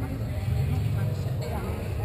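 A steady low rumble, with faint voices talking in the background.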